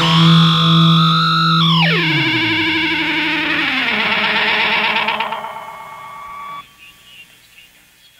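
The end of a live indie rock piece: a held instrumental drone of many tones slides down in pitch twice, then fades and cuts off sharply about two-thirds of the way through, leaving only a faint tail.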